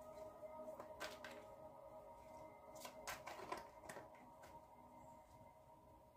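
Faint, soft clicks and riffles of a tarot card deck being shuffled in the hands, a few at a time, mostly about one second and three seconds in. Under them runs quiet background music of sustained tones.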